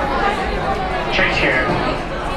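Indistinct chatter of several people talking at once. A clearer, higher-pitched voice stands out about a second in.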